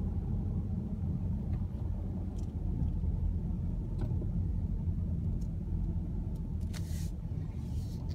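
Steady low rumble of a car's engine and tyres, heard from inside the cabin while driving. A few faint ticks and a short hiss come near the end.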